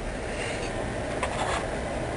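Steady background hiss with a few faint light clicks about a second and a half in.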